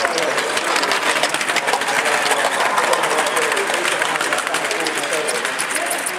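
Large-scale model goods train running past close by: a quick, steady stream of clicks from the wheels over the rail joints, over a rolling rush that swells as it passes. People talk in the background.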